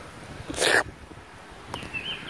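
A person right at the microphone lets out a short breathy hiss. Near the end comes a brief high chirp.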